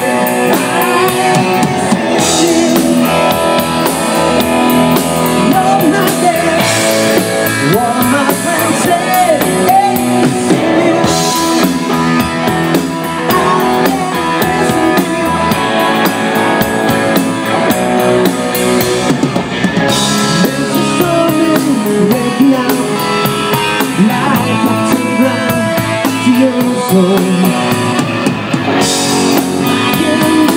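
A rock band playing live: distorted electric guitars over a drum kit, with a man singing into the microphone. Loud and continuous throughout.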